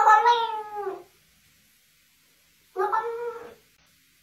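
Cat yowling: two long, drawn-out calls. The first lasts about a second and slides down in pitch at its end. The second, a little shorter, comes about three-quarters of the way through.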